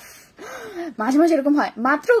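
A woman speaking, opening with a breathy intake of breath.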